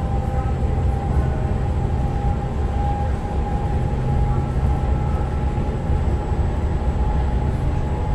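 Inside a Z 20500 double-deck electric multiple unit running at speed: a steady low rumble of wheels on rail, with a steady whine held on one pitch over it.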